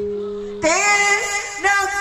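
Live Sundanese ensemble music: a held low note fades for about half a second, then a high female voice comes in singing a wavering, ornamented phrase.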